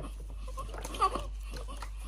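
Newborn baby fussing between cries in the bath, with one short whimpering cry about a second in.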